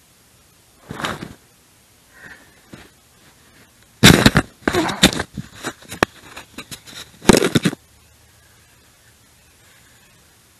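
Close rustling and knocking right at the microphone in irregular bursts: a short one about a second in, then a loud crackly run from about four seconds in to nearly eight.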